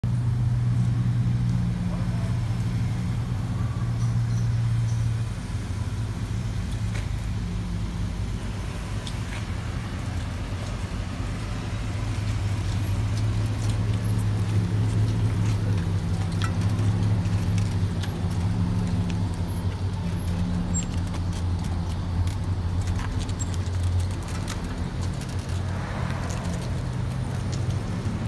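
1996 Chevrolet Impala SS's 5.7-litre LT1 V8 idling: a steady low exhaust rumble that swells and eases a little, with a few faint clicks over it.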